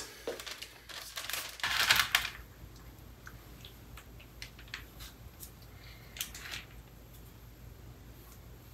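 Parchment paper crinkling and rustling under hands folding strips of puff pastry dough over a filling, loudest in the first two seconds or so, then faint scattered rustles and small taps.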